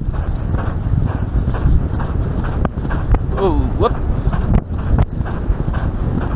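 Galloping horse's hoofbeats on turf, heard from the saddle, over a loud low rumble of wind and movement. About halfway through, a short voiced call falls and then rises in pitch, typical of a rider urging the horse on.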